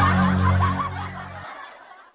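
A high-pitched laugh over a low held chord, both fading away; the chord cuts off about a second and a half in, leaving near silence.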